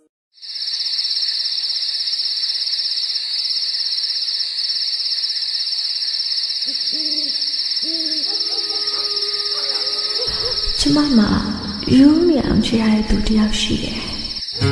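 Recorded night ambience opening a song: a steady, high cricket trill with owl hoots from about seven seconds in. Near the end, low instrumental music with guitar comes in under the crickets.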